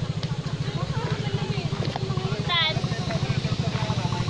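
A steady low motor drone with a fast, even throb, with a brief voice about halfway through.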